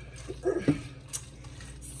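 Soft squishing and a sharp click of a spoon stirring thick macaroni and cheese in a bowl, over a steady low hum.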